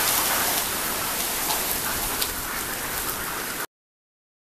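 Steady, heavy rain falling, an even hiss with scattered drip ticks, which cuts off suddenly near the end.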